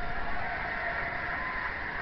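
A televised football match playing in the room: the steady noise of the stadium crowd coming from the TV set.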